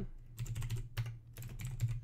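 Typing on a computer keyboard: a quick, uneven run of key clicks over a low steady hum.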